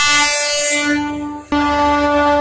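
Train horn sounding a long, steady blast that fades out a little over a second in, then a second blast starting sharply near the end.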